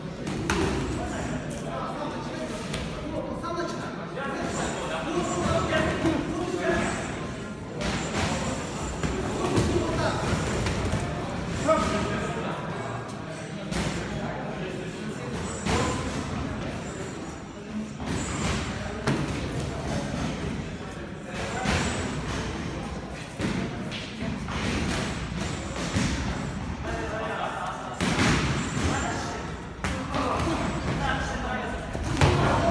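Repeated thuds of boxing gloves landing on gloves, headguards and bodies during an amateur bout, mixed with the scuffing of feet on the ring canvas, in a large echoing hall. Voices call out throughout.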